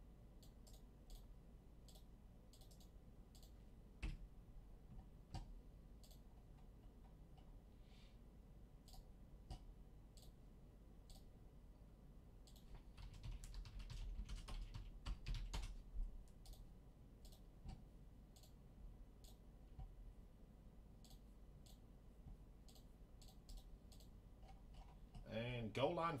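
Faint, irregular typing and clicking on a computer keyboard and mouse as names are entered into a spreadsheet, with a busier run of keystrokes a little past halfway.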